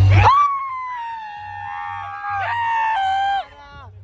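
Several people yelling one long, high-pitched cry together, held for about three seconds with a slowly falling pitch, then breaking off: the cheer that goes up when a rival kite is cut. A faint music beat continues underneath.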